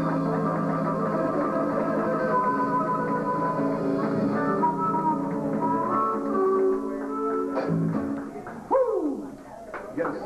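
Live blues-rock band of harmonica, electric guitar and electric bass playing, with steady held harmonica notes over the bass; the song winds down about eight seconds in. A few knocks and a brief falling sweep of sound follow near the end.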